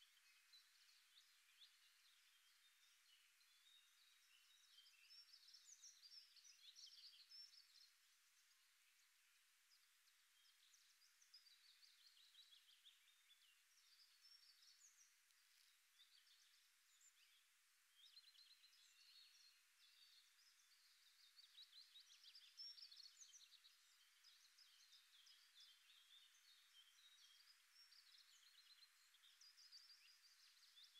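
Faint birdsong: quick runs of high chirps that come and go, a little louder about five seconds in and again past the twenty-second mark, over near silence.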